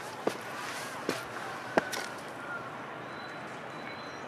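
Steady outdoor background hiss with three short, sharp clicks about a second apart.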